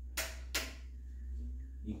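Two sharp clicks about a third of a second apart near the start, over a steady low hum.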